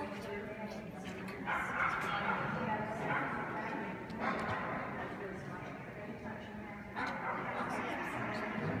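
A dog barking in several bursts, with yips.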